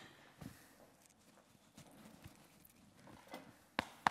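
Quiet room tone with a few scattered faint knocks and clicks, and one sharp click just before the end.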